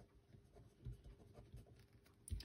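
A felt-tip pen writing on paper, very faint, with a few soft pen strokes audible about a second in.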